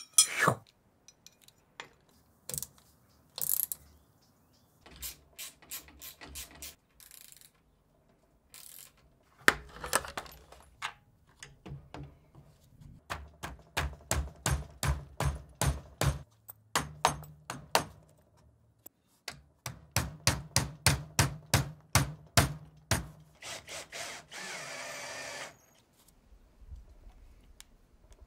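Cordless drill driving screws to mount a bracket, its motor hum broken by evenly spaced clicks about four a second in two long runs, with scattered knocks of metal parts being handled before them and a short steady whirr near the end.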